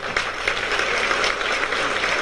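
Audience applauding, a dense clatter of many hands clapping that sets in just before and holds steady throughout.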